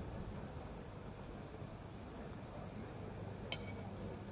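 Quiet outdoor ambience with a low steady hum, and one sharp clink near the end.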